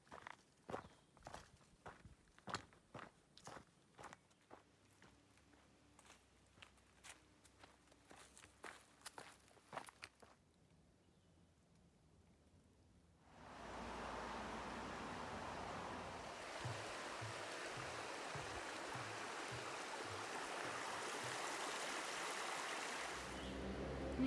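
Walking footsteps and trekking-pole taps on a dirt trail, about two a second, for the first ten seconds. After a brief quiet gap there is a steady rush of a stream, with faint low thuds of footsteps on a wooden footbridge.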